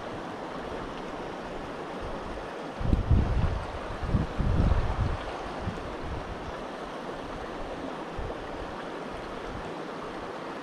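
Small stream rushing steadily, with low rumbling buffets on the microphone from about three to five seconds in.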